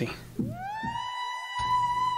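An Omnisphere software synthesizer lead patch being auditioned: a single bright note that slides up in pitch for about half a second and then holds steady.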